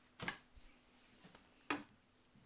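Two short clicks of small objects being handled, about a second and a half apart, the second the louder, over faint room quiet.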